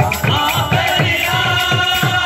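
Odia kirtan music: voices singing a chant over khol (clay barrel drums) played by hand in quick low strokes, about five a second, each dropping in pitch.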